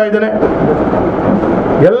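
A man's speech breaks off, then loud, steady noise without any pitch fills the pause of about a second before he speaks again.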